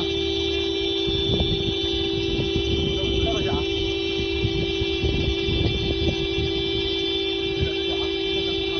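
Car horn sounding continuously on one steady note without a break. Beneath it are irregular scuffing and knocking sounds, and a few faint voices.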